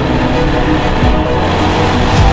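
A Chevrolet Corvette C8's V8 engine running as the car drives past close by, mixed under a music track.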